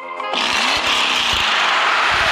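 A loud, steady, motor-like rasping noise starts suddenly about a third of a second in and holds on, like an engine sound effect.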